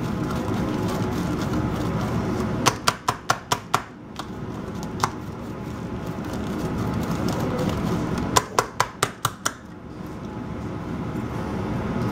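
Hand-held herb chopper cutting fresh basil, rosemary and oregano against a paper plate, with two quick runs of sharp clicks, about six a second, a few seconds in and again near the end.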